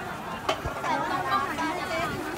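Voices of people chatting, with a sharp knock about half a second in.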